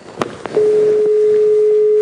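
Telephone line dropping on a call: a click, then a steady single-pitch line tone from about half a second in, the sign that the caller has been cut off.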